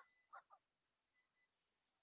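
Near silence: a pause in the talk, with only a couple of faint, brief sounds in the first half second.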